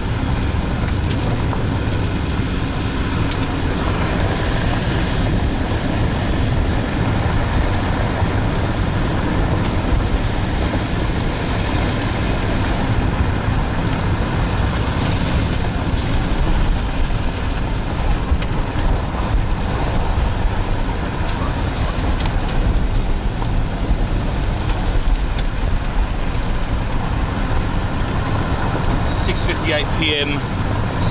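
Steady road and engine noise of a moving vehicle, heard from inside the cabin, with a deep rumble.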